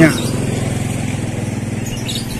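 Small motorcycle engine running steadily at low revs, with an even, fast pulse.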